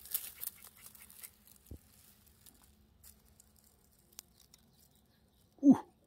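Faint rustling and crackling of dry grass and twigs during the first second or so, then near quiet with one soft knock and a faint click. A man's short exclamation comes at the very end.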